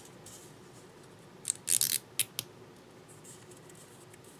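A strip of paper rustling against fingers as it is wound onto a paper-bead roller, in a few short crisp bursts around the middle, over quiet room tone.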